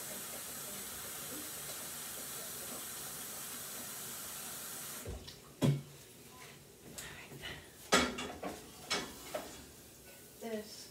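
Kitchen tap running into a sink, shut off abruptly about five seconds in, then several knocks and clatters of kitchenware, the loudest about eight seconds in.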